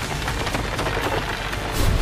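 Anime battle sound effects: a dense crackling hiss over a low rumble, swelling into a heavier, louder thud near the end.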